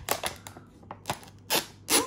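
Foil membrane seal crinkling and crackling as it is peeled back from the rim of a plastic powder canister, with two louder crackles about a second and a half in and near the end.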